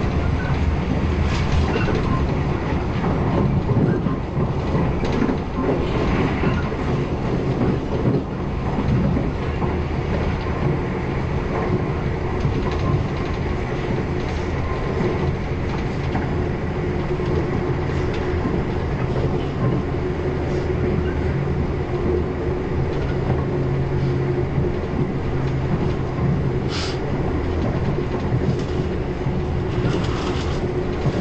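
Irish Rail passenger train running fast, heard from on board: a steady rumble of wheels on track, with a few sharp clicks, the clearest one near the end.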